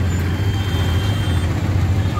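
Auto-rickshaw engine running with road noise as it drives, heard from inside the open passenger compartment: a steady low hum under a rushing wash.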